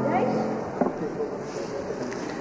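The last notes of piano music die away, then low voices and a room hum remain, with a sharp knock about a second in as papers are handled on a wooden lectern.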